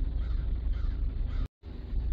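Steady background noise with a low rumble and a soft hiss, dropping to dead silence for a split second about one and a half seconds in, at an edit cut.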